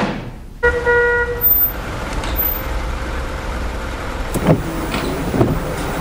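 A taxi's car horn gives one short toot, under a second long, over its engine running steadily. A couple of brief knocks come in the second half.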